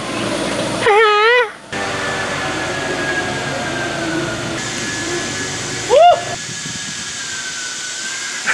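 A man laughing in a wavering voice about a second in, then a short rising whoop around six seconds, over a steady background hiss.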